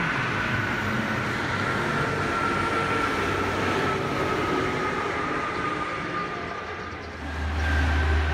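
Traffic passing on a highway: a coach's steady running whine slowly falling in pitch as it moves away, over road noise. Near the end a heavy truck comes close with a loud deep drone.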